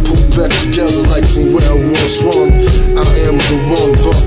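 Hip hop track: a rapping voice over a drum beat with heavy bass and a held melodic line.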